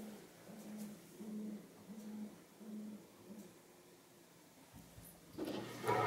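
A dog making soft, low whimpers in an even series, about one every 0.7 s, that fade out a little past halfway. A dull thump follows near the end.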